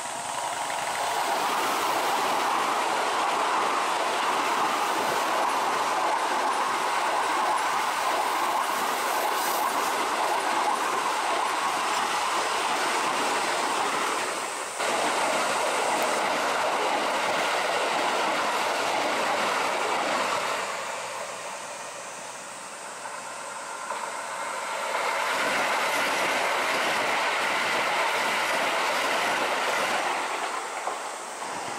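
Keikyu electric commuter trains passing close by, a steady loud rolling of steel wheels on the rails. The noise eases about two-thirds of the way through, then builds again as another train comes in.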